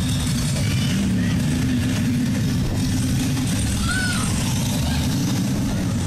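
KMG Afterburner pendulum ride running: a steady low rumble as its arm swings the gondola star through the air.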